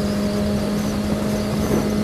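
Kawasaki ZX-6R 636 inline-four engine running at a steady cruising speed, its hum holding one pitch, over a low rush of wind and road noise.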